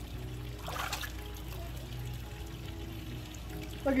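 Gentle splashing and lapping of lake water around swimmers, with a small splash just under a second in, over faint steady background music.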